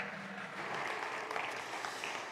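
Light, scattered applause from a congregation, a steady even patter.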